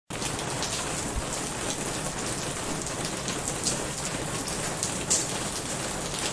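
Steady rain falling, with a continuous hiss and scattered individual raindrops ticking, starting abruptly at the very beginning.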